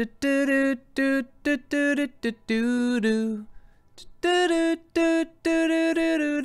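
A man's voice singing a wordless melody in a string of short held notes, a first phrase, a brief pause, then a second, higher phrase. It is a verse tune being tried out before any lyrics are written.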